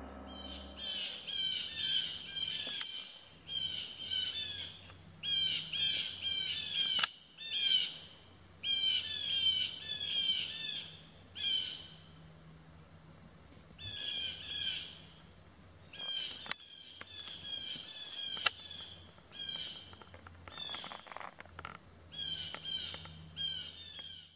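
Birds calling in repeated bouts of high, quick chirping notes, with short pauses between bouts.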